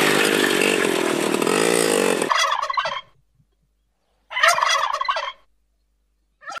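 A small motorbike engine runs with its pitch rising and falling, then cuts off abruptly about two seconds in. A male domestic turkey then gobbles twice, the second call longer than the first.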